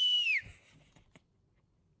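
A man whistling: a held high note that glides down and stops about half a second in, followed by near quiet with one faint click.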